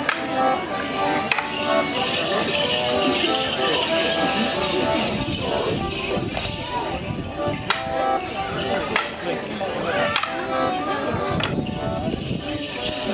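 A squeezebox playing a Morris dance tune, with wooden sticks clacking together about six times at uneven intervals and a high jingle of the dancers' leg bells. Crowd voices run underneath.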